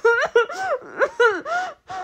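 A woman whimpering and gasping in a run of short, high-pitched sobs that rise and fall in pitch.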